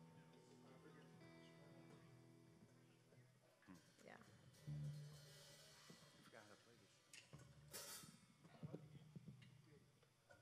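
Faint, scattered instrument noodling from a rock band on stage between songs. A held chord fades out over the first few seconds, a low bass note sounds about five seconds in, and a cymbal hit comes near the eight-second mark.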